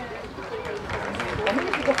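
Indistinct voices of several people talking at once, with the dull footfalls of a horse cantering on sand underneath.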